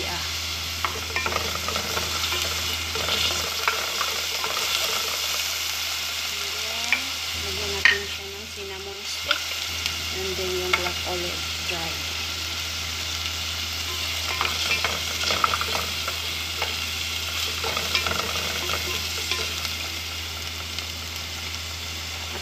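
Garlic, cumin and ginger sizzling steadily in hot oil in a metal pot, stirred with short scrapes and clicks of a utensil against the pot.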